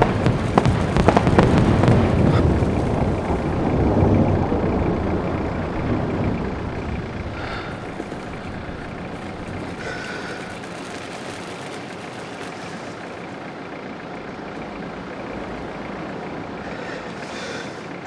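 Fireworks going off: a loud low boom with crackling that fades away over the first several seconds, leaving a steady, quieter low rumble.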